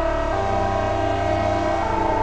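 Ambient synthesizer drone from ring-modulated dual oscillators in a VCV Rack software modular patch, holding a dense D minor chord of sustained tones through an ambient reverb effect. Some of the notes change about a third of a second in and again near the end.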